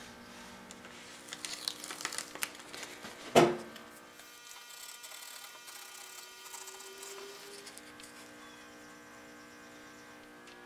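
Blue masking tape being handled and pressed down onto a small wooden piece, crinkling lightly, then a single sharp knock about three and a half seconds in. Afterwards faint scratching of a pencil marking on the tape, over a steady faint hum.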